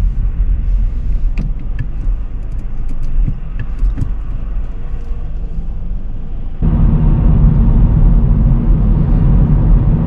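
Car interior noise: a low engine hum and rumble while the car waits at traffic lights, with a few faint clicks. About two-thirds of the way through it cuts abruptly to louder road and engine rumble as the car drives at speed.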